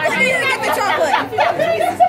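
Group chatter: several people talking and calling out over one another at once.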